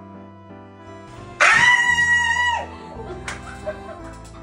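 Background music, with a loud high-pitched squeal starting suddenly about a second and a half in. The squeal holds one pitch for just over a second, then slides down and stops, typical of an excited shriek.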